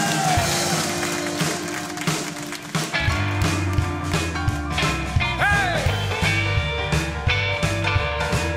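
A live dansband plays the instrumental intro of a rock-style song on electric guitars, keyboard and drums. It opens on held chords, and bass and drums come in with a steady beat about three seconds in.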